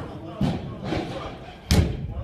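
Two heavy thuds: a softer one about half a second in and a loud, sharp slam near the end, over background voices.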